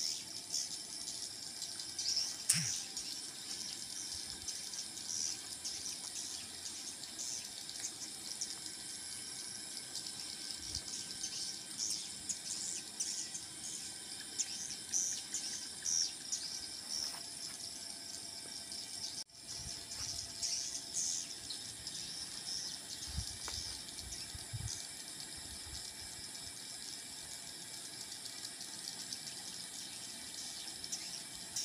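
A flock of swiftlets chirping around their nesting house: a dense, continuous twittering of many high, short chirps. A few low handling bumps on the microphone come about three-quarters of the way through.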